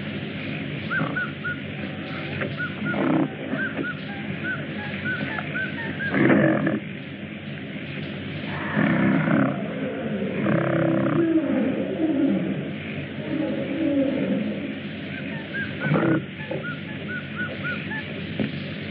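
Jungle animal sound effects on an old film soundtrack: a bird's short chirping calls repeat, and loud animal cries and roars break in several times. The loudest comes about six seconds in, with a longer run of calls in the middle.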